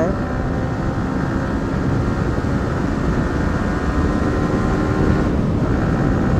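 Fully faired sport motorcycle's engine running at highway speed, around 70 km/h, mixed with wind noise, picked up by an earphone mic inside the rider's helmet. The engine note stays steady and gets a little louder near the end as the bike speeds up.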